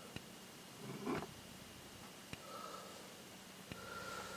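Quiet room tone with faint handling noise from a handheld camera: a few soft isolated clicks and one brief rustle about a second in.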